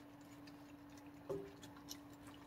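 Faint clicks and ticks of a raccoon feeding from a stainless steel bowl, the loudest a little past halfway, over a steady faint hum.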